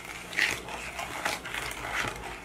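A fork stirring and tapping batter in a plastic mixing bowl, with a few faint clicks. There is a brief high-pitched squeak about half a second in.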